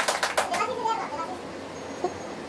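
Several people clapping their hands quickly and unevenly. The clapping stops about half a second in, leaving a few people's voices talking.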